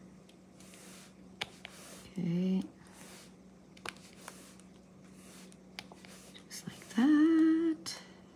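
A woman humming briefly twice, a short rising note about two seconds in and a longer, louder one near the end. Between them, faint light clicks of a drill pen pressing square resin drills onto a diamond painting canvas.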